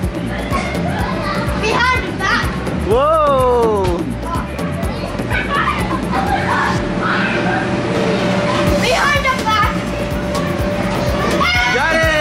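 Background music with a steady beat under children shrieking and calling out as they play. High child's squeals stand out about three seconds in, again around nine seconds and near the end.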